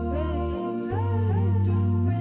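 A cappella vocal jazz ensemble in seven parts holding a soft sustained chord over a low bass voice, while a higher voice sings a gliding, ornamented line above it. The bass voice moves to a new note about half a second in.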